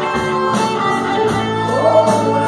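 Live rock band playing: electric guitar holding a long note over bass and drums, with a steady cymbal beat.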